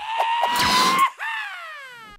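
Comic cartoon sound effect: a pitched cry that rises slowly for about a second, then slides steeply down and fades, with a few light clicks near the start.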